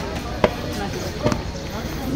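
Footsteps on a hard floor: two sharp heel strikes about a second apart, the first the louder, over faint background voices.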